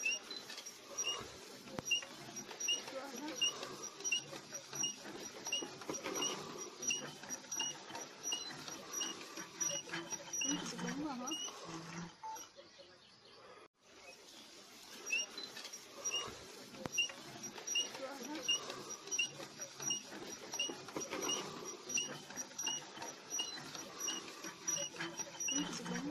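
Hand-cranked earth auger turning in soil, squeaking in a steady rhythm of about two squeaks a second with a scraping grind underneath. The sound breaks off briefly about halfway, then the same rhythm starts again.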